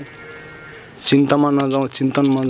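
A man's voice in a slow, drawn-out, sing-song delivery: a short pause, then one held phrase a little after a second in.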